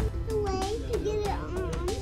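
A young child's voice making sliding, wordless sounds over background music with a steady beat.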